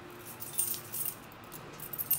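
Light metallic jingling and clicking in two short spells, about half a second in and again near the end, over the faint steady hum of a Kone traction elevator car travelling down.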